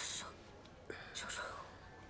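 Soft whispering, breathy and hissing, in a short burst at the start and another a little past a second in.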